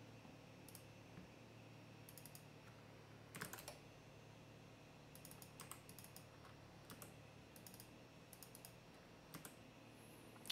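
Faint computer keyboard typing and clicking in short, scattered groups of keystrokes, as numbers are typed into a software's input fields.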